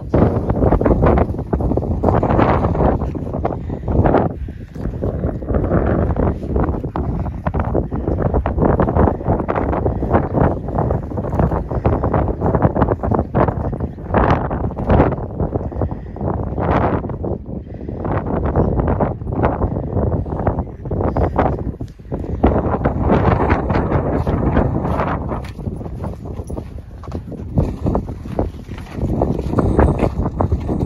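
Wind buffeting the microphone in uneven gusts, loud and rumbling.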